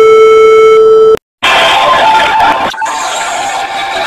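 A loud, steady electronic beep-like tone that cuts off abruptly about a second in. After a brief gap comes a loud, harsh, distorted burst of noise that lasts to the end.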